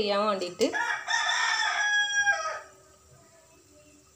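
A rooster crowing once, a single call of about two seconds with a slight drop in pitch at the end. It begins just after the last words of a woman's voice, about a second in.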